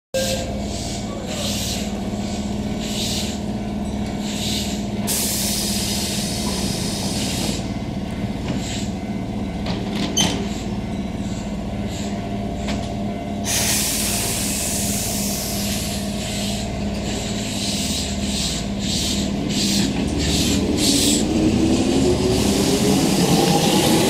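Keihan 2200 series electric train standing at the platform with a steady electric hum. Two long hisses of air come from the train, and a sharp click about ten seconds in. Near the end it starts to pull away, and a rising motor whine grows louder.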